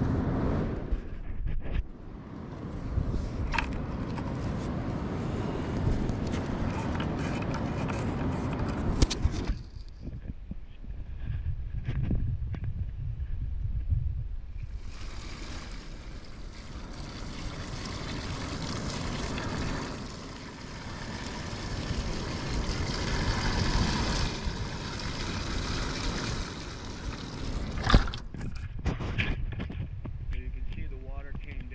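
Water poured from a plastic bucket into a small plastic catch basin, splashing and gurgling down into the drain pipe, with a break of a few seconds about ten seconds in. A single sharp knock comes near the end.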